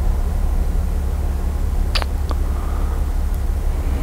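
Steady low background rumble, with two brief clicks about two seconds in.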